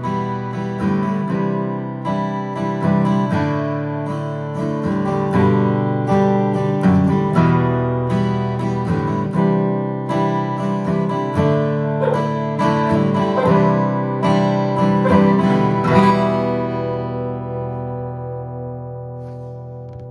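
Martin M36 acoustic guitar strummed in a steady rhythm, with a harmonica playing held notes over it. About four seconds before the end the strumming stops, and the last chord rings on and fades away.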